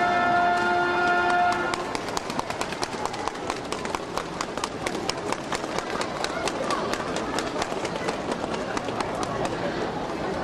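A held chord of ceremonial music ends a couple of seconds in, then a crowd of spectators applauds, with steady clapping and a little chatter.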